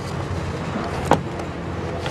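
Steady low rumble of a school bus under way, heard from inside the cabin, with one sharp knock about a second in.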